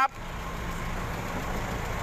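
A motor vehicle's engine idling close by: a steady low rumble.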